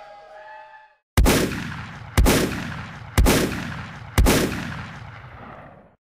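The last chord of a live rock band rings out and fades during the first second. Then come four loud, booming hits, one a second, each dying away in a long echoing tail.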